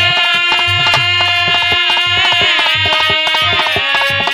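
Instrumental interlude of Bhojpuri folk music: a harmonium holds sustained reedy chords while a dholak plays a steady rhythm of hand strokes with deep bass beats.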